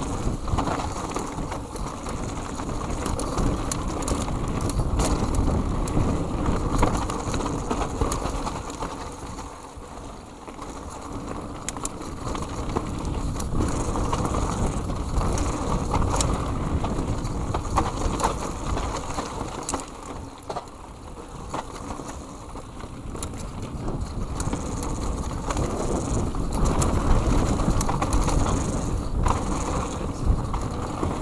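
Mountain bike descending a dirt forest trail: a continuous rumble of knobby tyres on dirt and roots with wind buffeting the microphone, and frequent sharp clicks and rattles from the bike over bumps. It eases off twice, about a third and two-thirds of the way through.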